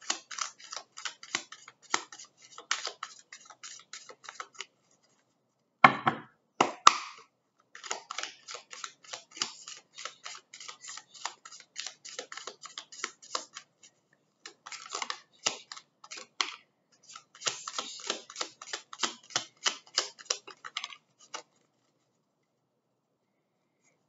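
A deck of oracle cards being shuffled by hand: runs of rapid, closely spaced card clicks broken by short pauses, with two louder knocks about six and seven seconds in. The shuffling stops a few seconds before the end.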